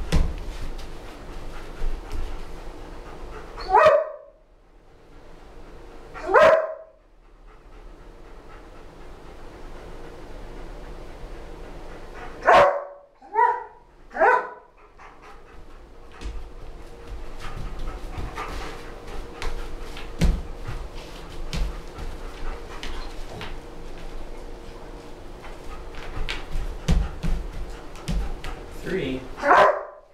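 German Shepherd dog barking in short single barks, about six in all: two early, three in quick succession midway, and one near the end.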